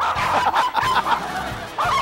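Two small dogs yapping in a rapid, frantic string of short, high-pitched barks at someone reaching for the cash box they guard.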